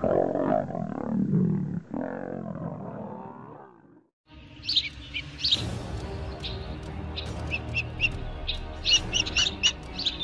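Lions growling as they fight at close range, fading out after about four seconds. Then background music with repeated short high bird chirps over it.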